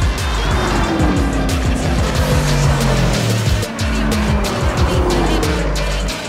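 Cars racing past at speed, their engine notes falling in pitch as they go by, mixed with background music with a steady beat.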